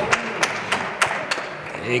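A few spectators clapping after a won point of hand pelota: about five sharp, scattered hand claps in the first second and a half.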